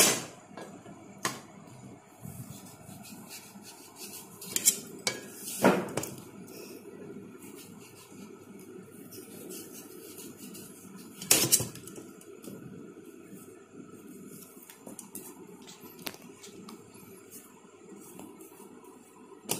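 Watermelon pieces and a knife knocking and clinking against a stainless steel plate. There are a handful of sharp knocks scattered through, the loudest about six and eleven seconds in.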